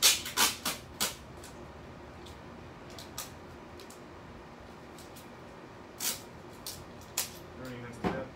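Wide adhesive tape ripped off its roll in four quick pulls in the first second, then two more about six and seven seconds in.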